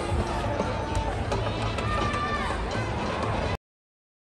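Music over a stadium's loudspeakers mixed with voices, at a fairly loud steady level, cutting off suddenly about three and a half seconds in.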